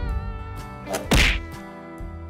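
Cartoon sound effect of a short, loud hit as the animated surprise egg splits open, about a second in, over steady children's background music.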